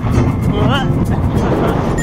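Dense rumble of a moving steel roller coaster ride: wind rushing over the on-board microphone along with the train's running noise on the track. About two-thirds of a second in, a short wavering voice cuts through it.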